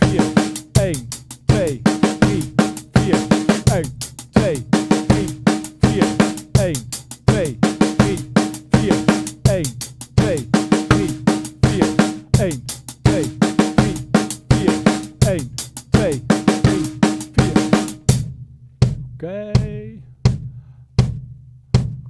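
Acoustic drum kit playing a steady groove: alternating-hand strokes on the hi-hat with bass drum and snare hits, repeating in even bars. The playing stops about 18 seconds in, and a few lone strokes follow near the end.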